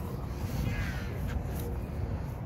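A single short bird call, falling in pitch, a little over half a second in, over a low wind rumble on the microphone.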